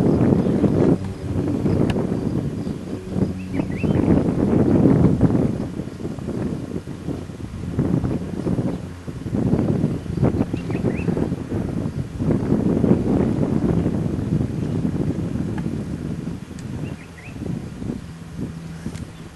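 Wind buffeting the camcorder microphone in gusts that rise and fall every second or two, with a few faint short high chirps over it.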